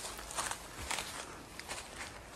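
Footsteps crunching on dry fallen leaves, about four steps in quick succession.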